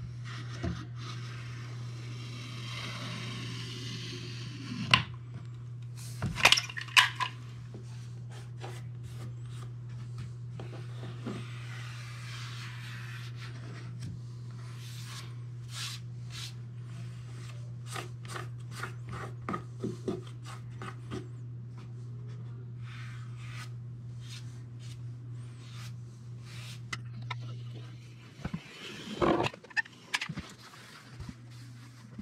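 Caulk gun in use on door trim: sharp clicks and knocks from the gun's trigger and plunger rod at irregular intervals, loudest in a cluster about six seconds in, with soft rubbing in between. A steady low hum runs underneath and stops near the end.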